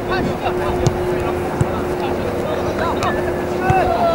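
Soccer players' distant shouts over a steady hum and a wind-like noise haze, with a few brief knocks.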